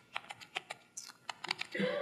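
A quick, irregular run of about a dozen light clicks and ticks, with speech starting up again right at the end.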